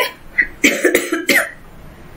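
A woman coughing: three short coughs in quick succession, over by about a second and a half.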